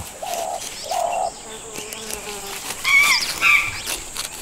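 Woodland ambience: insects buzzing and birds calling, with two short calls in the first second or so and a burst of high chirps about three seconds in.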